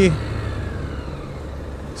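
Motorcycle engine and wind noise as the bike slows to a stop, the sound fading steadily with a faint falling whine as it decelerates.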